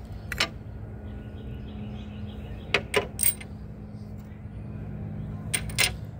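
Things being moved and handled: a few short sharp clicks and knocks, three close together around the middle and two near the end, over a steady low hum.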